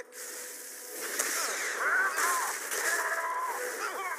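Rushing hiss of jet thrusters, with short wavering, strained vocal cries over it from about a second in.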